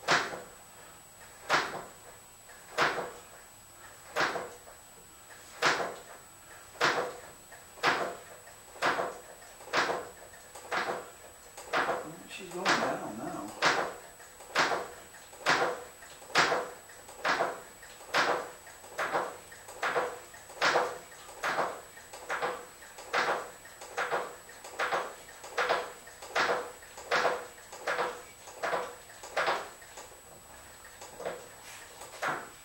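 Beetle's brake pedal pumped over and over to push fluid through while bleeding the brakes: a short creaking stroke at each push, about one a second at first and quickening toward the end. A longer rubbing noise comes in about twelve seconds in.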